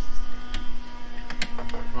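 Sharp plastic clicks and taps as a wiring connector is pushed into a Fiat Blue & Me Bluetooth module and the module is handled, over a steady low hum.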